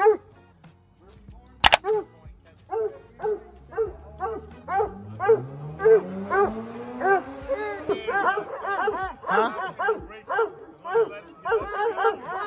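Dogs barking over and over, about two barks a second, the barking getting busier in the second half. A sharp click sounds once early on, and a low hum rises slowly in pitch under the barking in the middle.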